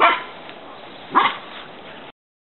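Poodle puppy giving two short barks, about a second apart.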